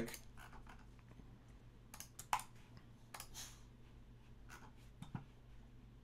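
Faint, scattered clicks and taps of a computer keyboard and mouse being worked, about half a dozen, the loudest a little over two seconds in, over a low steady hum.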